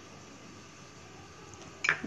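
Quiet room tone with a low steady hiss and no distinct sound. The rice flour being poured into the bowl makes no clear sound. A woman's voice starts right at the end.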